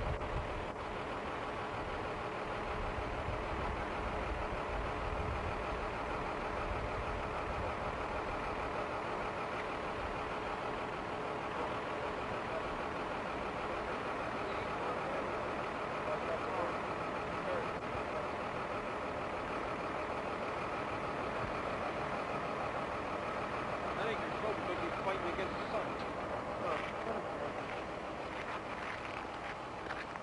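Steady mechanical running noise with a faint steady hum, and indistinct voices in the background.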